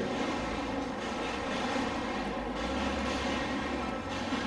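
A steady background drone, unbroken and even in level.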